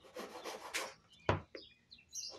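Knife blade slicing through a compressed sawdust fire log: a gritty scraping for about a second, then a single sharp knock.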